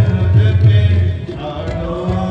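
Harmonium and tabla playing shabad kirtan: held harmonium tones over tabla, with deep strokes of the tabla's bass drum strongest in the first second or so.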